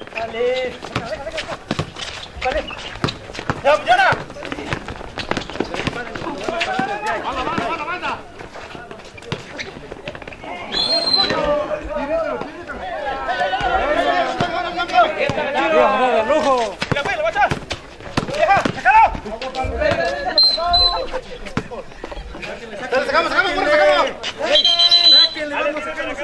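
Players and spectators talking and calling out during a basketball game, with a ball bouncing on the concrete court. Three short, high whistle blasts come near the middle, about two-thirds through, and near the end; the last is the loudest.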